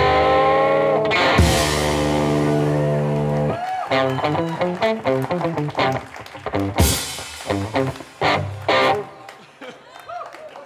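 Electric guitar through a tube amp and a drum kit, played live. A held, ringing guitar chord sounds under cymbal crashes, then short bent guitar notes are punctuated by drum hits. Near the end it dies away as the song closes.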